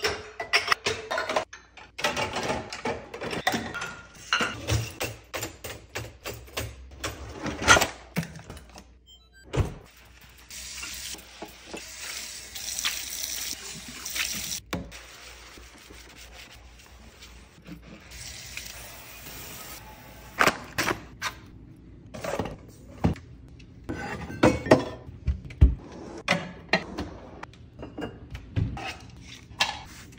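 Dishes and glasses clattering as a dishwasher rack is unloaded. Then comes a steady hiss of water and scrubbing in a kitchen sink for about ten seconds, and after that a run of sharp clicks and taps as the counter is cleaned.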